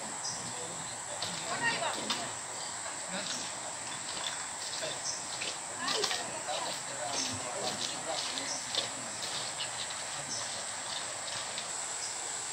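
A steady high-pitched insect drone in the background, with faint distant voices and a few small knocks.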